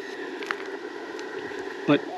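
Steady receiver hiss and band noise from the speaker of an Icom IC-705 portable HF transceiver, with a brief tick about half a second in.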